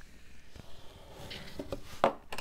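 Faint rustling and light scraping of paper and cardboard being pressed and handled, with a few soft taps.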